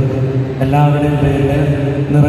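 A priest chanting a liturgical prayer into a microphone, his voice held on long, steady notes, with a short break about half a second in before the next phrase.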